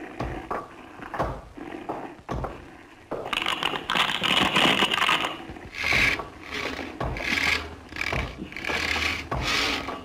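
Saws and tools working wood: knocks at first, then a dense stretch of scraping, then even rasping saw strokes a bit under a second apart from about six seconds in.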